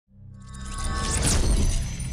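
Cinematic logo sting: music with a designed whoosh-and-shatter effect that swells up out of silence, a deep low rumble under a bright, glassy shimmer, loudest about a second and a half in.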